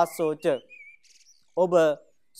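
A man speaking Sinhala in a calm, measured voice, with a pause of about a second. Early in the pause a faint, thin, wavering high whistle sounds briefly.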